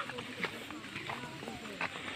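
Footsteps on a dirt trail, with a few sharp taps, and faint voices talking in the background.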